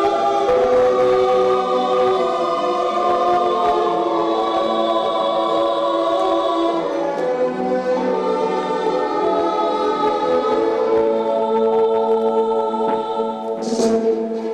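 Choral music: a choir singing slow, sustained chords, used as the accompaniment for a rhythmic gymnastics group routine.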